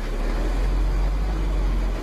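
Truck engine running with a steady low rumble, heard from inside the cab as the truck rolls forward a few feet.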